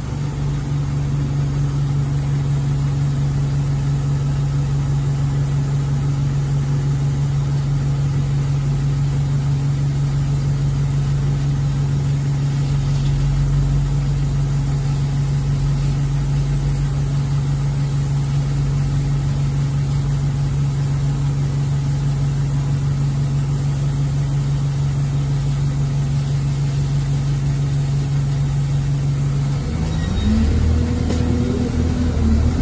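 Single-deck Alexander Dennis Enviro200 bus's diesel engine idling at a standstill, heard from inside the saloon as a steady low hum that does not change.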